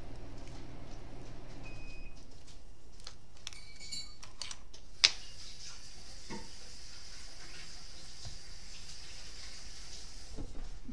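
Faint clicks and light knocks of small objects handled on a table, with one sharp click about five seconds in, after which a faint steady high hiss continues.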